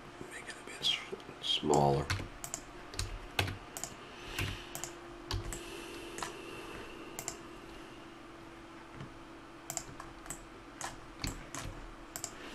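Computer keyboard keys clicking irregularly, single keystrokes every second or so as Blender shortcuts are pressed.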